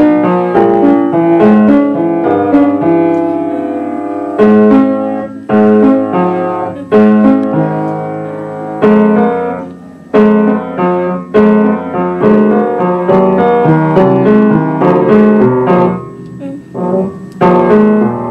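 An upright piano being played: a piece of struck chords and melody notes that ring and fade, with louder accented chords every second or so through the middle.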